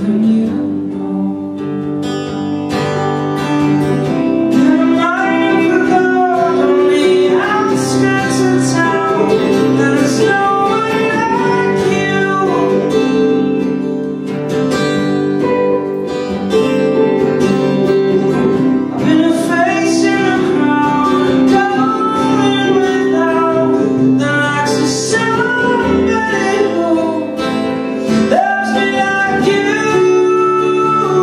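Live band music: steadily strummed acoustic guitar with electric guitar, and a gliding melody line over the chords.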